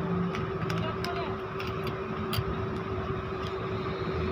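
A steady low hum with one constant pitched tone, and a few faint clicks.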